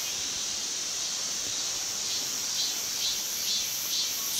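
A steady, high-pitched chorus of insects chirring in the woodland.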